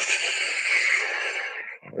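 A man's long breath out, a sigh close to the microphone, lasting nearly two seconds and fading out.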